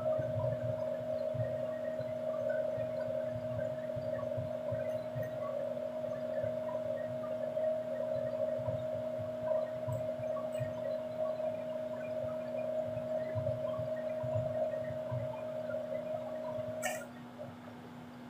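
A steady mid-pitched hum with a fainter, lower hum beneath it. Near the end a click sounds and the upper tone cuts off, leaving the low hum.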